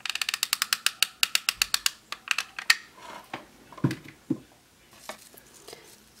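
Hot glue gun's trigger feed clicking rapidly, about a dozen clicks a second for two seconds, as glue is pushed out. A few scattered clicks and two soft knocks follow.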